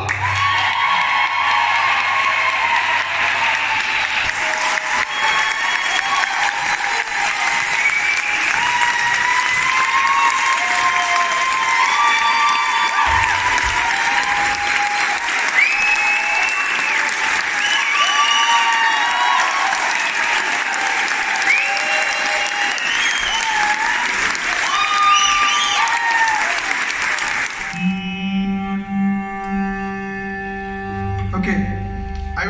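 A concert audience applauding and cheering, with many short high whoops over the clapping. About two seconds before the end the applause stops and a stage piano holds a steady chord.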